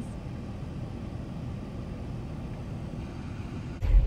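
Steady low rumble of a car heard from inside the cabin, with no distinct events. Near the end it cuts suddenly to a louder, deeper rumble.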